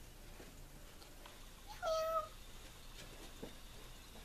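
A single short, high-pitched meow from a cat, about halfway through.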